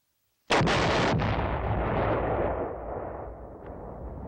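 Several buried demolition charges go off in a tunnel in quick succession: three sharp blasts within about the first second, then a long, deep rumble of the explosion that slowly dies away.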